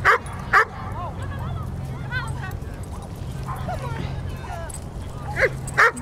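Several dogs barking and yipping: two sharp barks at the very start, then scattered fainter yips and whines, over a steady low background rumble.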